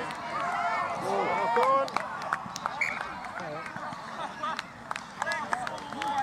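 Several voices shouting and calling at once during rugby play, overlapping with no clear words, with scattered sharp clicks among them.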